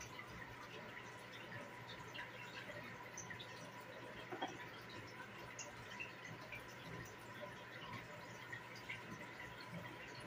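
Faint room tone with a few light clicks and taps, one a little louder about halfway, from plastic Lego bricks being handled on a wooden table, over a thin steady high tone.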